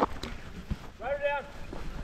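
A person's short moan about a second in, its pitch rising then falling, from a rider down after a mountain-bike crash, over a low rumble of wind and movement.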